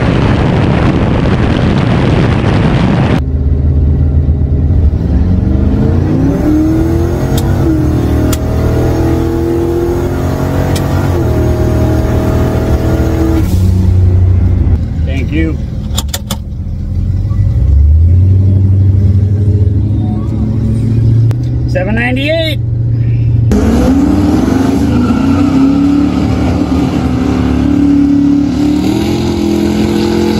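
Lincoln Town Car drag car running: first at speed down the strip, a dense rush of wind and engine noise, then its engine heard from inside the cabin at low revs, rising in pitch several times. The engine hums steadily for a while, with a few clicks and a short rising whine, and is heard again in pitch climbs near the end.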